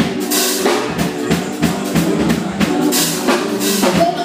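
Live band music with the drum kit to the fore: a steady groove of kick and snare hits in an instrumental stretch with no singing.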